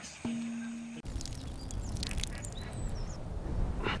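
A short held musical note, then a steady low rumble of wind on the microphone with a few faint, high bird chirps.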